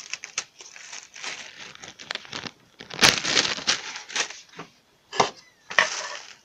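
Plastic bag of crushed crackers crinkling as it is handled and tipped. The crackling comes in uneven bursts, the loudest about three seconds in, with a short quiet gap near the end.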